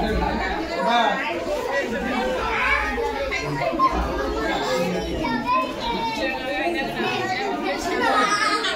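Indistinct chatter of many children and adults talking over one another, echoing in a large room.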